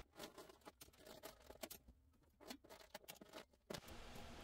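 Near silence with faint, scattered light clicks of small plastic toys being handled and dropped into sorting bins.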